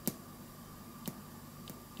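Static discharge ticks in a Pioneer CT-F950 cassette deck's audio: three sharp clicks, one at the start, one about a second in and a fainter one near the end. They are the sign of a tape-mechanism shaft that is not properly grounded, so static builds up on it and discharges.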